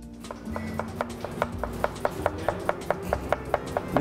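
Chef's knife slicing a cucumber thinly on a cutting board: quick, even taps about five a second, over background music.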